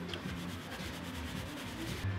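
Paper napkin rustling and rubbing as hands are wiped with it.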